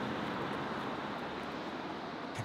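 Steady outdoor hum of road traffic, even and without any single passing vehicle standing out, fading slightly.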